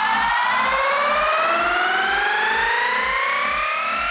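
Electronic dance music build-up from a DJ mix: several stacked synth tones sweep steadily upward in a siren-like riser over a steady kick drum at about two beats a second.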